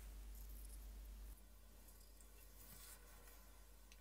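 Near silence: faint room tone with a low hum that drops in level about a second in.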